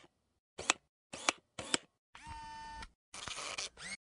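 Camera shutter sound effect: three sharp clicks, then a steady electronic tone for under a second, then a short burst of noise that ends in a rising sweep.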